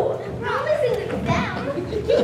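Several children's voices crying out and talking over one another, their pitch rising and falling.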